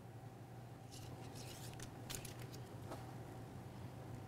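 Faint papery crackles of a vinyl stripe decal being peeled from its backing paper and handled, a cluster of short crackles from about a second in until near three seconds, over a steady low hum.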